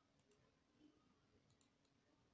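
Near silence: room tone with a few very faint ticks, the clearest a little under a second in.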